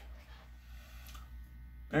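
A quiet pause filled by a steady low electrical hum, with a faint rustle of handling; a man's voice starts right at the end.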